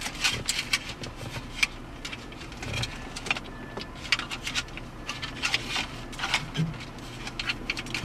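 Irregular light clicks and rattles of a plastic dashboard radio-mount bracket and its wiring harness being handled and fitted into the dash opening.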